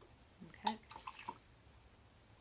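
A paintbrush swished and tapped in a water container: a quick cluster of small splashes and clinks about half a second in, lasting under a second.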